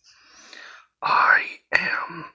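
A person's voice making wordless sounds: a faint breathy, whisper-like start, then two louder drawn-out vocal cries with sliding pitch, about a second in and near the end.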